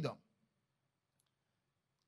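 A man's word through a microphone ends just after the start, then near silence with one faint, short click about a second in.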